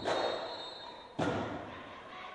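Marching drumline hitting two loud unison strikes about a second apart, each ringing out through the gym.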